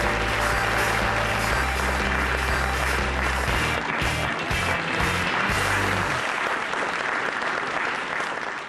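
Audience applauding, with background music underneath; the music's bass line stops about six seconds in.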